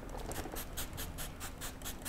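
Hand trigger spray bottle squirting neutralising fluid onto a face in rapid squirts, about six or seven short hisses a second, to stop a glycolic acid peel.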